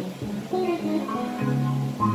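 Live band music led by a guitar, with low notes held for about half a second under a moving line of higher notes.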